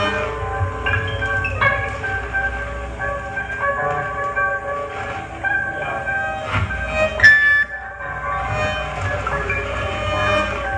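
Noise-rock band playing live: two electric guitars ringing out sustained, overlapping notes that shift every second or so over drums. One loud sharp hit stands out about seven seconds in.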